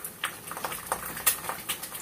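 Wooden chopsticks stirring ramen noodles in a saucepan of boiling water, making irregular light clicks and taps against the pot.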